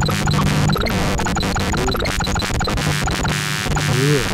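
Atonal analog synthesizer noise: a steady low drone under a dense hiss, broken by rapid crackling clicks throughout.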